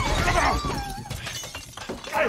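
Glass shattering, then dying away with pieces falling, while voices cry out over the crash.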